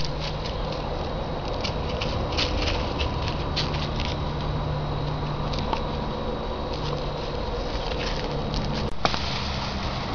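Footsteps through dry leaf litter: scattered light crackles and patters over a steady background hiss.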